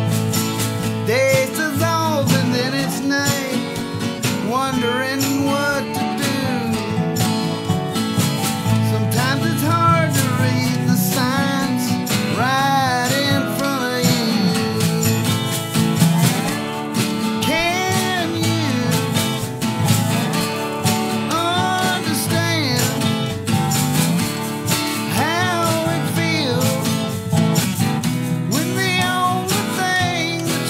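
Acoustic country-bluegrass trio playing: a dobro (resonator guitar) played with a slide, its notes sliding and bending, over a strummed acoustic guitar, with wire brushes on a snare drum.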